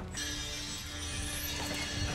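Film soundtrack: a single held low music note over a steady low rumble and faint mechanical rattling.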